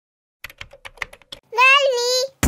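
Computer keyboard keys clicking in a quick run of about ten strokes as a word is typed, followed about one and a half seconds in by a high, childlike voice.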